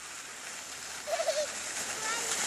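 Sled sliding down a snowy slope, a hiss of snow that grows louder as it nears, with a short wavering high-pitched cry from a rider about a second in.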